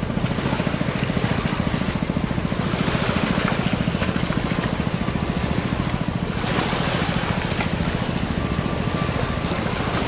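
Fishing boat's inboard diesel engine running under way, a steady, rapid low thudding beat, with water washing along the hull.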